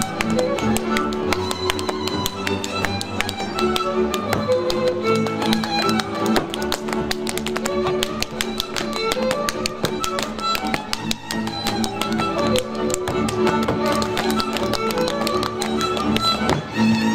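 Hungarian village string band of violins and double bass playing Kalotaszeg dance music. Over it come many quick, sharp taps from the dancers' boots stamping on the stage and being slapped by hand.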